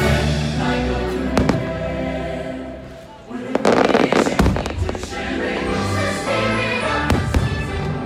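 Fireworks bursting overhead, with single sharp bangs and a dense stretch of crackling about three and a half seconds in, over soundtrack music with a choir.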